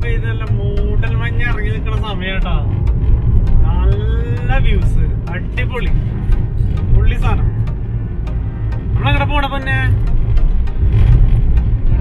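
Steady low rumble of a car driving on a highway, heard from inside the cabin.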